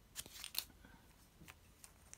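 Faint handling noise: a short rustle of a paper instruction leaflet, then a couple of light clicks from small plastic toy-figure parts being picked up.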